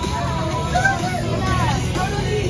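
Steady low rumble of a coach bus's engine and tyres heard from inside the passenger cabin, with passengers' voices chattering faintly over it.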